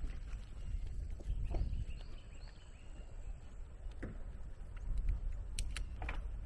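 Wind rumbling on the microphone of a shoulder-mounted camera as a bicycle rolls along, with a few faint bird chirps about two seconds in and two sharp clicks near the end.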